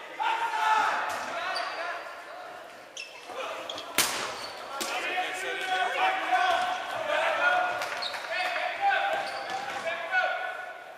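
Dodgeballs bouncing and smacking off the gym floor and walls during play, with one sharp, loud ball impact about four seconds in, amid players shouting, all echoing in the large hall.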